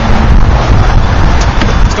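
Steady low outdoor rumble throughout, with a faint click about one and a half seconds in as the car's front door is opened.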